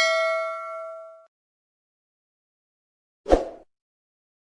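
Notification-bell sound effect from a subscribe-button animation: a bright bell ding that rings out and fades over about a second. A short burst of noise follows near the end.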